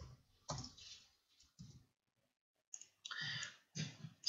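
Faint clicking of computer keyboard keys as code is typed: a handful of short, separate clicks in the first two seconds, then a few more near the end.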